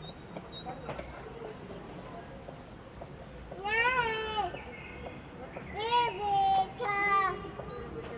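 Three loud, high-pitched drawn-out voice calls, each rising then falling in pitch: one around the middle, then two close together in the last third, over a steady background hiss.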